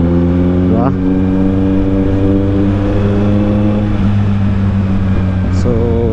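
Kawasaki Z900's 948 cc inline-four engine, fitted with a new aftermarket exhaust, running at a steady engine speed while cruising. The pitch holds even throughout.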